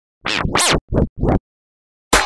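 Four quick record-scratch sounds, each sweeping up and down in pitch, within about the first second and a half.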